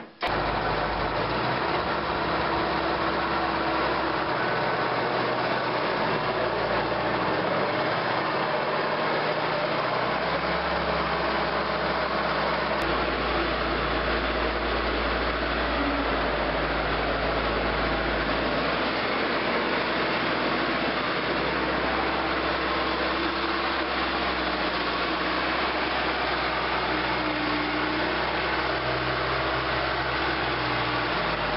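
Skid-steer loader's engine running steadily, its low note shifting a few times as the machine works.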